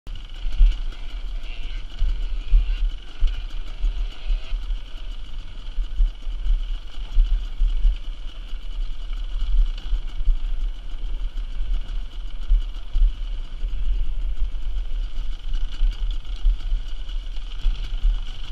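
Enduro motorcycle riding down a rough dirt track, heard from a helmet camera: a steady, uneven low rumble of engine, wind and jolts on the microphone.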